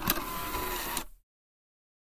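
A short editing sound effect at a cut to the end card: a hiss-like burst of noise with a faint steady tone in it, lasting about a second and cutting off sharply.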